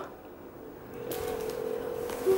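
Quiet at first, then about a second in a faint rustling of the play tent's cotton fabric as its front flaps are pushed apart, under a faint steady hum.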